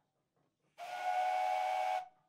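Steam whistle on a 1908 Dolbeer steam donkey, sounded by pulling its cord: a single steady blast of about a second, starting just under a second in, with a rush of steam hiss.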